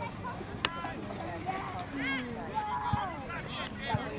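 Players and spectators calling out across a soccer field during play, short shouts rising and falling in pitch, with one sharp knock about half a second in, over a steady low rumble of wind on the microphone.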